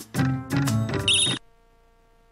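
Short electronic jingle from a video slot game: a few quick struck chords ending in a high warbling trill, cutting off suddenly about two-thirds of the way through.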